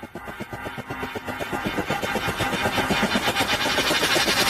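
Logo intro sound effect building up: a rapid, even pulsing with steady tones underneath, growing steadily louder, with a hiss rising in the highs.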